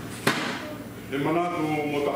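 A man reading aloud into a lectern microphone, with a short sharp click about a quarter second in, before the reading carries on.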